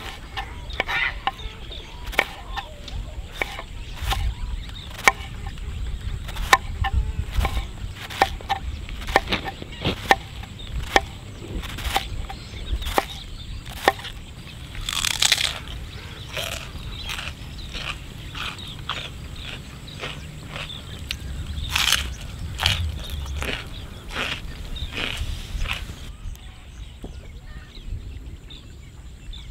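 Knife shredding a head of cabbage on a wooden chopping board: a steady run of crisp cuts, about two a second, stopping shortly before the end.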